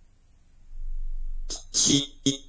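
A quiet start, then a low rumble, then about one and a half seconds in a sudden loud, breathy vocal burst from a person.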